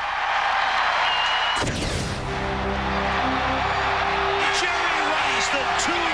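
Highlight-reel soundtrack: an even crowd noise, cut off about a second and a half in by music with steady held chords, with indistinct voices mixed in.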